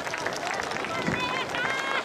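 Voices of a crowd of spectators and performers talking and calling, some high-pitched, with no music.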